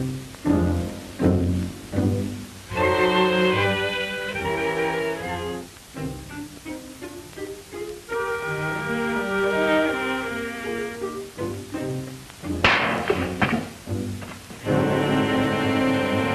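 Orchestral film score of bowed strings: short detached low notes give way to held chords. About three-quarters of the way through comes a sudden sharp accent, the loudest moment.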